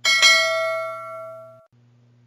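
Notification-bell sound effect of a subscribe-button animation: a single struck bell ding with several bright overtones. It fades over about a second and a half, then cuts off abruptly.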